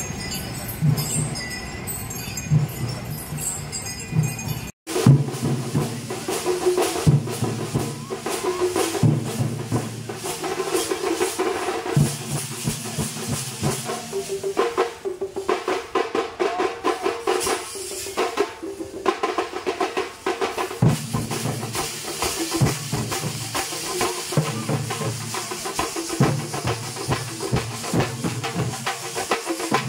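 A procession drum troupe beating drums together in a fast, driving rhythm, with crowd noise underneath. The sound drops out for an instant about five seconds in, and the drumming is louder after that.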